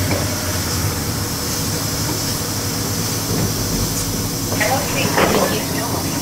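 Steady interior noise of a city transit bus on the move over a wet road: a low, even engine hum under a hiss of tyres on wet pavement.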